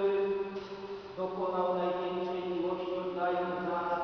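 Slow chanted singing in long, steadily held notes, the pitch moving to a new note about a second in and again about three seconds in.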